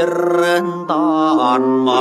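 A man singing an Inner Mongolian narrative folk song, his voice wavering in pitch on held notes over steady instrumental accompaniment.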